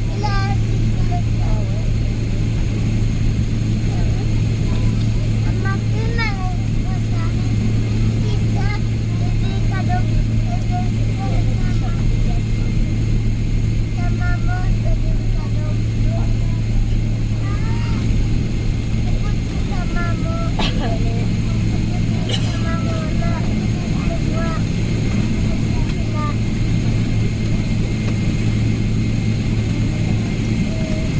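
Cabin noise of a Boeing 777-300ER taxiing on its GE90-115B engines: a steady low hum at an even level, without the build-up of a take-off roll. Passengers' voices can be heard talking faintly now and then.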